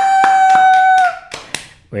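Hands clapping about four times a second under one long, high, held vocal cheer. Both stop about one and a half seconds in.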